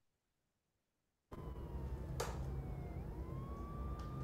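Film soundtrack over a video-call screen share: a low rumble with a single slow wailing tone that dips and then rises. A sharp click comes about two seconds in. The sound cuts in abruptly after a second of dead silence.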